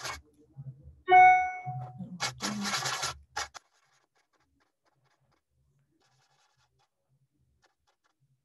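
A short steady pitched tone about a second in, then about a second of scratchy rubbing strokes, typical of a watercolor brush being scrubbed and worked against paint and paper. The second half is near silence.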